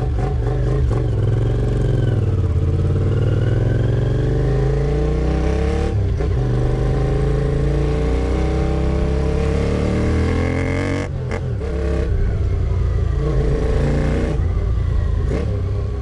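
Honda CX650 V-twin motorcycle engine pulling hard under acceleration. Its note rises steadily, then drops back briefly at gear changes about six and eleven seconds in.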